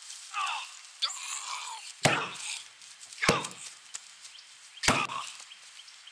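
Three sharp punch-like smacks during a staged scuffle, the first about two seconds in and the others roughly a second and a half apart. Short vocal noises come before the first smack.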